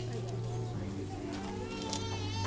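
Church organ backing music holding a low sustained chord, which moves to a new chord just under a second in, with faint voices over it.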